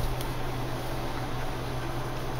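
Steady low hum with an even hiss of room background; no distinct sound stands out.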